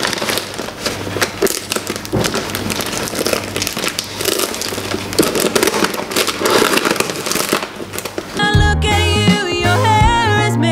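Crinkling and rustling of a bouquet's paper wrapping as it is handled, with the snips of scissors trimming rose stems. Background music with singing comes in about eight and a half seconds in.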